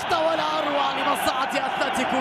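A male football commentator's excited voice calling a missed chance, with stadium crowd noise behind.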